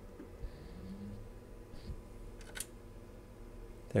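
Quiet room tone with a few faint small clicks and light handling noises, the sharpest a single tick about two and a half seconds in.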